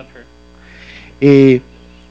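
Steady electrical mains hum through a microphone and sound system, with a man's short, loud, steady-pitched vocal sound, like a held 'ehh', into the microphone a little past the middle.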